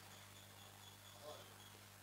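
Near silence: faint room tone with a low steady hum.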